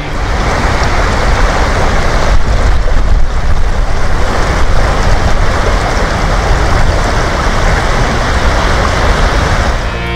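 Water rushing over stones in a shallow, fast-flowing channel, a steady rushing noise, with wind buffeting the microphone and adding a fluttering rumble.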